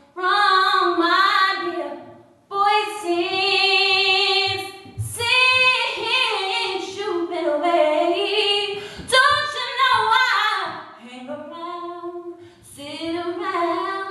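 A woman singing solo and unaccompanied, in long held notes that bend and slide in pitch, with brief pauses near the start and about two and a half seconds in.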